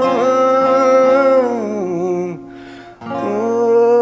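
A man singing long held notes over a Granada acoustic guitar; the held note slides down and breaks off a little after two seconds in for a quick breath, and the sung line starts again about a second later.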